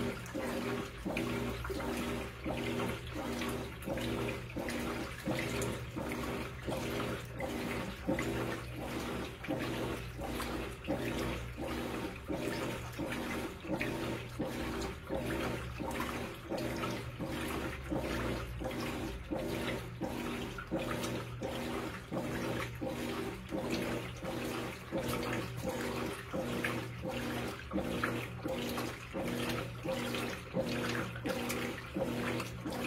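Whirlpool WTW4816 top-load washing machine agitating a load in the wash, with its motor humming and the wash plate stroking back and forth in a steady, even rhythm while the water and clothes slosh in the tub.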